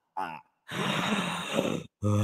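A woman laughing: a short "ha", then a long, breathy laughing exhale close to the microphone.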